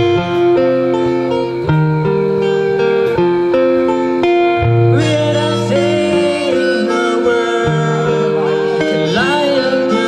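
Live acoustic band playing a slow ballad: harmonica holding the melody over strummed acoustic guitar, then a man's singing voice comes in about halfway through.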